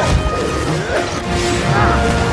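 Film battle soundtrack: orchestral score mixed with crashing, thwacking impact effects from close combat, the strikes landing at the start and again near the end.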